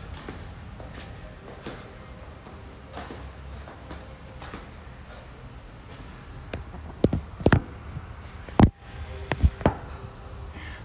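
Phone being handled and set down on a dumbbell rack: after a steady stretch of gym room noise, a cluster of about six sharp knocks and clunks of the phone against the rack, the loudest one about two-thirds of the way in.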